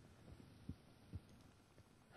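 Near silence: studio room tone, with two faint, brief low thumps about a second apart.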